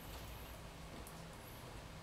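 Near silence: faint room tone with a low steady hum and no distinct event.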